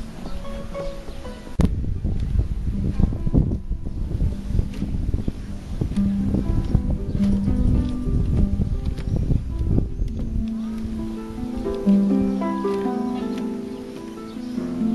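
Harp being played, single plucked notes and chords ringing out. From about a second and a half in until about ten seconds, a low, fluttering rumble on the microphone lies under the music.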